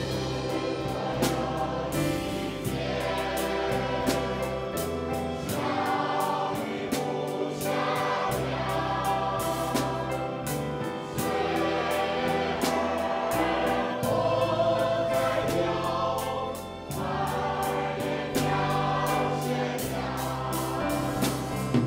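Mixed choir of adults and children singing together, accompanied by a live band with a steady drum beat.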